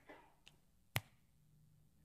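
Quiet room tone broken by one short, sharp click about a second in, with a fainter click about half a second before it.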